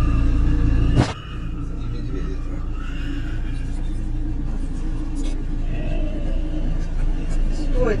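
Car engine idling, a steady low rumble heard from inside the vehicle. A sharp click comes about a second in, after which the rumble is quieter.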